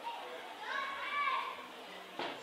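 Children's voices chattering, with one high-pitched voice calling out about a second in.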